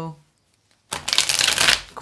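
A deck of tarot cards shuffled by hand: a quick burst of rapid, fluttering card clicks lasting about a second, starting about a second in.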